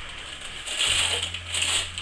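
Wrapping paper rustling and crinkling as presents are unwrapped, a noisy crackle that starts about half a second in.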